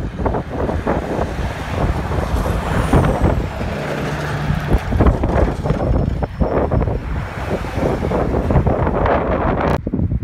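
Heavy road traffic going by close at hand, trucks including a low-bed semi-trailer rig, a loud continuous rush of engines and tyres with wind on the microphone. It cuts off sharply near the end.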